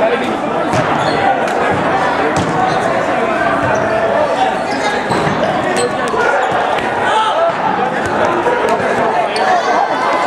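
Rubber dodgeballs being thrown, bouncing and thudding on a hardwood gym floor: a scatter of sharp knocks, with players' voices and shouts echoing in a large gym.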